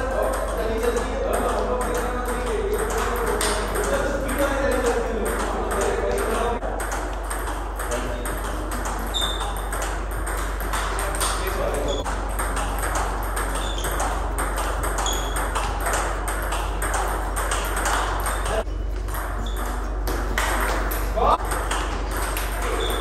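Table tennis ball clicking off bats and tables in quick, irregular rallies, with hits from two tables overlapping. A steady low hum runs underneath.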